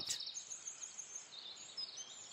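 Faint background ambience: a soft hiss with thin, high-pitched chirping.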